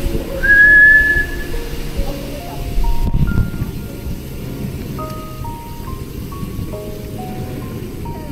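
A simple melody of clear single notes, whistling-like, with one long held note near the start, over steady wind and road rumble.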